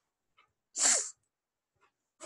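A single short, hissy burst of breath from a man, about a second in.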